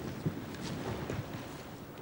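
Wind buffeting the camcorder microphone: a steady low, noisy rush with small irregular bumps.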